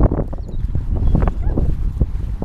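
Dogs running on grass, close to a moving microphone: irregular thudding footfalls and low wind buffeting, with a dog panting close by.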